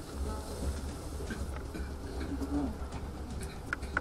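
Hall room tone between speakers: a steady low electrical hum with faint, indistinct voices, and a couple of small clicks near the end.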